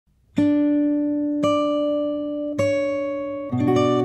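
Steel-string acoustic guitar (TYMA TG5) played fingerstyle with a capo: three single notes struck about a second apart, each left to ring, then fuller fingerpicked playing with lower bass notes starts about three and a half seconds in.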